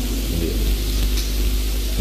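Steady hiss over a low hum: the background noise of the recording, heard in a pause in the speech.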